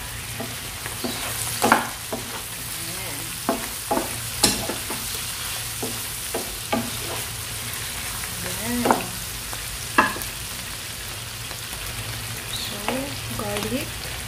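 Chicken breasts, sliced mushrooms and garlic sizzling in oil in a nonstick frying pan, with a wooden spatula knocking and scraping against the pan about ten times as the pieces are pushed around.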